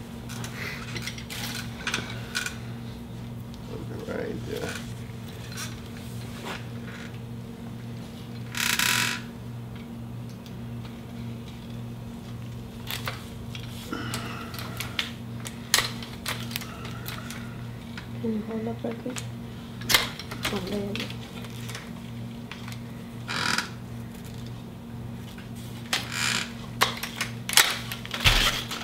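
Loppers working at a pomegranate branch just below an air-layer root ball: scattered sharp metallic clicks and snips, with a few short rustling bursts. A steady low hum runs underneath.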